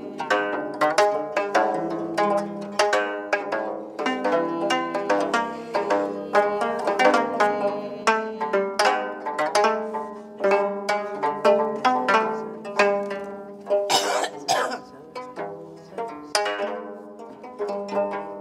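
Gayageum, the Korean twelve-string zither, plucked in a steady stream of ringing notes. A brief burst of noise cuts across the notes about three-quarters of the way through.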